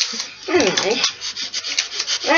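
Clear sticky tape (sellotape) being pulled from the roll and handled: a crackly, rubbing noise.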